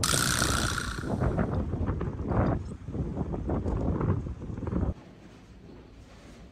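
Strong cold wind buffeting the microphone in irregular gusts, cutting off abruptly about five seconds in.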